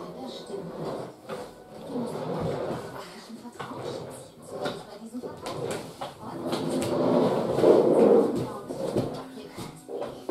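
Indistinct voices, too unclear for any words to be made out, swelling to their loudest about seven to eight and a half seconds in.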